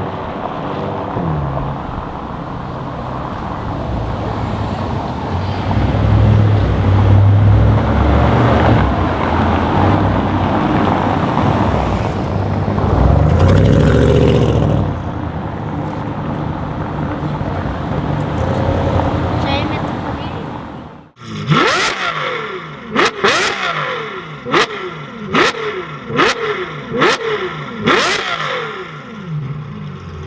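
Performance cars driving on a brick street: a Bentley Continental GT pulling away, then an Audi RS6 coming past, their engines swelling louder several times. About 21 seconds in the sound cuts off, and a different sound follows: sharp hits about once a second over a pitch that climbs and falls again and again.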